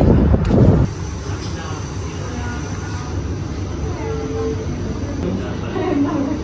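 Loud low wind rumble on the microphone for under a second. It cuts suddenly to quieter bar-room background: faint chatter of voices and a thin, steady high whine.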